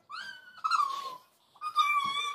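A girl squealing with laughter: two high-pitched squeals, one in the first second and another starting near the end.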